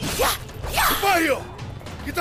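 Staged sword-fight sound effects: a quick swish of a swung blade near the start, then a shouted cry that slides down in pitch.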